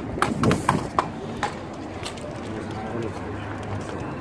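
Outdoor ambience with indistinct nearby voices and a few sharp clicks in the first second and a half, then a steady outdoor hiss.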